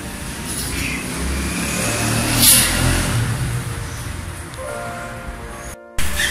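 Motor vehicle traffic: a steady low engine rumble, with one vehicle passing about two and a half seconds in.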